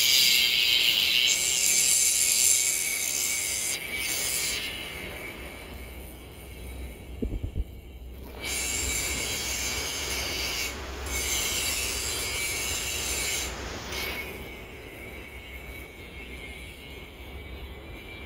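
A loud, high-pitched buzzing hiss in two long stretches, each cutting in and out abruptly, over a faint low rumble, with a brief dull knock about seven seconds in.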